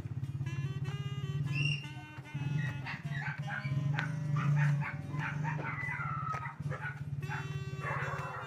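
Dogs barking and howling over a steady low hum, with calls coming thick from about two and a half seconds in.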